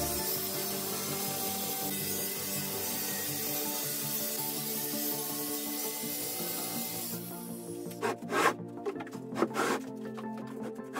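Background music over the rasping hiss of a circular saw cutting yellow tongue particleboard flooring; the cutting noise stops abruptly about seven seconds in. A few sharp knocks follow near the end.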